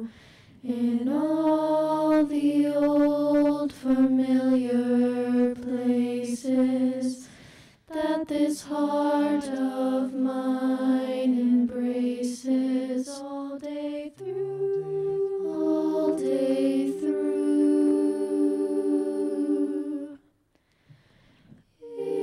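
Small a cappella vocal ensemble singing sustained close-harmony chords, with the voices stacked from a low bass line up to high parts. The chords break off briefly about half a second in and again near 8 seconds, and stop for a moment near the end.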